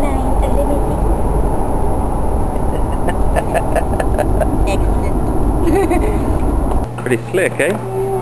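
Road noise inside a moving limousine: a steady low rumble with voices faintly heard over it. About seven seconds in the rumble cuts off abruptly, giving way to a steady low hum and voices.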